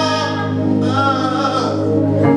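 Live gospel praise song: a man's voice singing over sustained Yamaha PSR-S775 keyboard chords and a held bass note.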